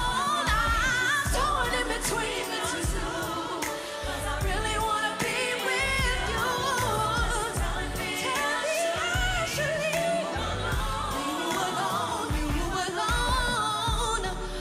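A woman singing an R&B pop song live into a handheld microphone over its backing music, her voice gliding through long, wavering notes.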